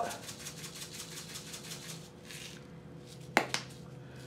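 Salt shaken from a shaker onto shredded cabbage and carrots: a quick run of fine, faint ticks. A single sharp knock follows near the end.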